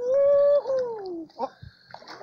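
A man's long drawn-out "ohh", held level and then falling in pitch, as a big fish being fought on the rod gets off the hook.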